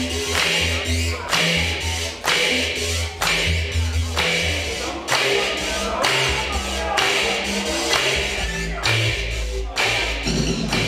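Live synth-rock band playing through a theatre PA, recorded from the audience: a steady drum beat of about two hits a second over a repeating low synth bass line.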